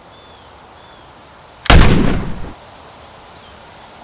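A single rifle shot about two seconds in: a sharp crack followed by a short echoing tail that dies away within a second.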